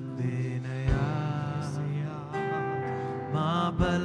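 Live worship band music on keyboard and guitars over a steady bass, with a wavering melody line and two deep drum hits, about a second in and near the end.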